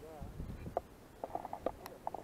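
Faint, indistinct voices talking at a distance in short snatches, with a single sharp click near the end.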